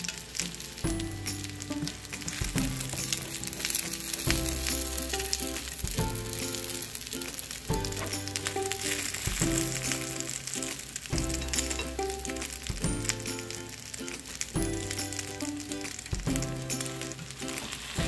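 Tortang talong (egg-dipped eggplant topped with ground beef) frying in oil in a nonstick skillet, with a steady sizzle and occasional scrapes of a spatula in the pan. Background music with a regular beat runs underneath.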